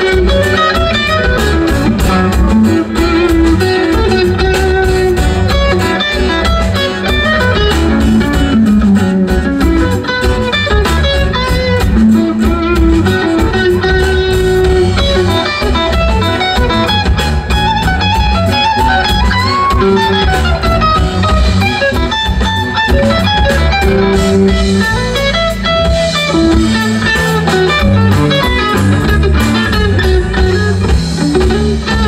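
A live progressive rock band playing an instrumental passage: electric guitar, laouto and violin carry the melodic lines over bass guitar and drums with a steady beat.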